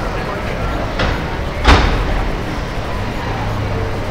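Busy street background noise broken, a little over a second and a half in, by a sudden short loud burst: a bush-disguise jump scare going off at a passer-by.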